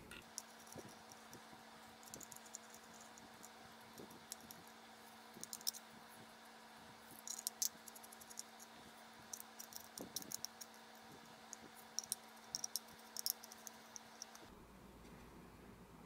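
Faint, scattered small clicks and ticks of a precision screwdriver working tiny screws out of a metal box mod and the loosened parts being handled.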